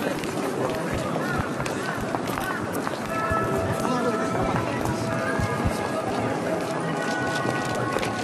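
Busy pedestrian street: crowd chatter and the footsteps of many people walking. About three seconds in, music made of steady held tones joins in.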